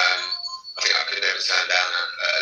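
Speech: a man talking over a video-call connection, with a brief pause about half a second in.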